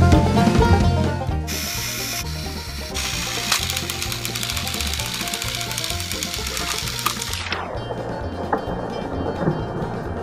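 Background music with a steady bass line, over the whirring of battery-powered TrackMaster toy train motors as two engines push against each other on plastic track. The high whirr fades out about seven and a half seconds in.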